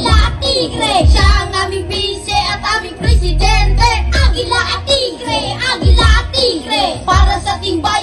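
Two boys rapping into microphones in turn over a hip-hop backing track with a strong, steady bass beat.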